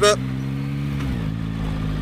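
Yamaha MT-09 Y-AMT's 890 cc three-cylinder engine running steadily while riding, its pitch stepping a little lower just past the middle.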